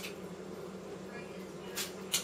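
Quiet chewing of a deep-fried hot chicken wing with crunchy skin, with one short sharp mouth noise near the end, over a low steady hum.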